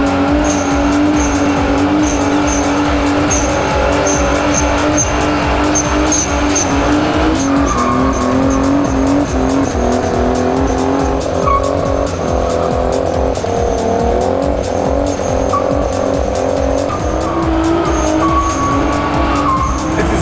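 Car engine held at high revs during a rolling burnout, rear tyres spinning and squealing on the concrete; the engine note holds high and shifts up and down as the driver works the pedals.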